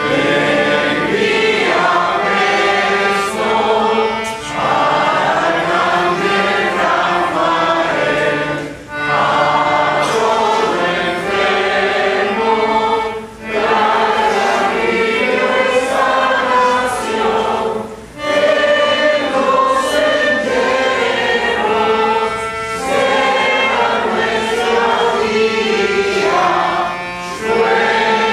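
A group of people singing a hymn together, in phrases of a few seconds each with short breaks for breath between them.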